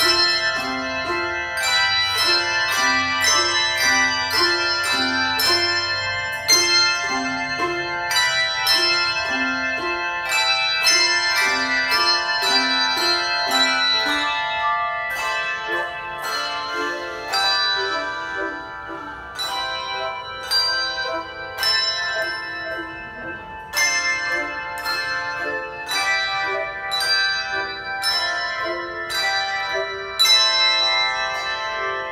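Handbell choir playing a piece of music: many brass handbells rung together in a steady rhythm of about two strokes a second, their tones ringing on between strokes. A low two-note bass figure alternates through the first half, then the lower part thins out.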